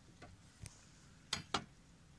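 Knife cutting through the hard chocolate glaze of a baumkuchen on a wooden board: two faint clicks in the first second, then two louder sharp cracks close together a little past halfway.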